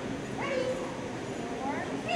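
A dog whining twice, with a rising call about half a second in and another near the end, over background talk.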